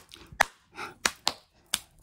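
Four short, sharp clicks spread out over about two seconds, like finger snaps or light taps.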